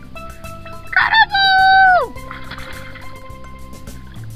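Background music, and about a second in a loud, high-pitched cry: a few short yelps, then one held note that falls away sharply.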